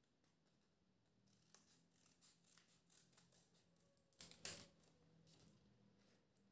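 Scissors cutting through folded paper: a few faint snips, then two louder snips close together about four seconds in.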